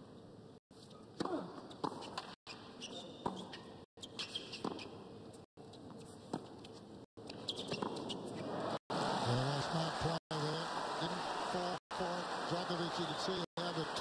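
Tennis rally: sharp strikes of racket on ball, spaced about a second apart. About eight seconds in, the crowd breaks into applause and cheering at the end of the point, which grows louder and carries on.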